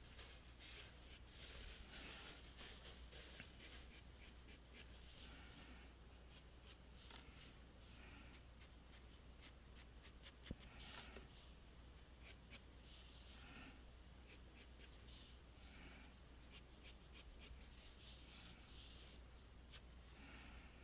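Pencil sketching on paper: faint, short scratching strokes in quick, irregular runs.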